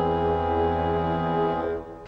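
A loud, sustained brass chord from the dramatic score, held steady and fading out near the end.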